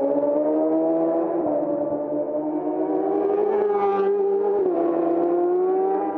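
Racing motorcycle engines held at high revs, accelerating away out of a corner with the pitch climbing steadily. The pitch drops briefly about one and a half seconds in and again near five seconds, as each upshift comes.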